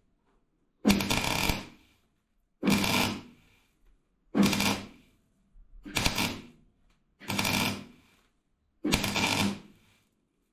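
MIG welder laying six short welds, each under a second, roughly every one and a half to two seconds, into thin steel panel on a car bulkhead. The welding is set hot enough to blow a few holes through the thin plate.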